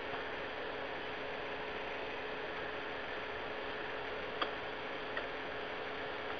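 Open conference-call phone line with no one talking: a steady hiss with a low two-tone hum, and a couple of faint clicks about four and five seconds in.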